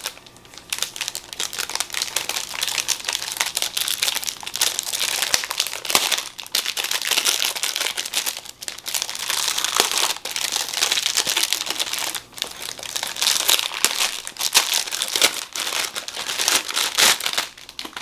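Clear plastic shrink wrap being peeled off and crumpled: a dense, continuous crinkling crackle that stops shortly before the end.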